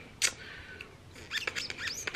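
Phone notification alert confirming a card payment: a click, then a quick run of short chirps that rise and fall in pitch, starting after about a second.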